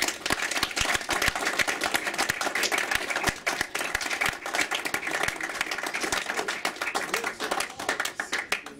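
Audience applauding: many hands clapping in a dense, steady patter that starts suddenly and thins out near the end.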